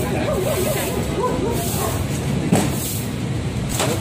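Steady outdoor street noise with a person's wavering, sing-song voice during the first second and a half.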